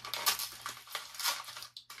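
Hands handling an electric bass guitar's body and hardware: a quick run of small clicks and rustling, with no notes played.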